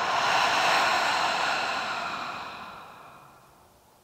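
A woman's long sigh: a deliberate exhale out through the open mouth, fading away over about three seconds.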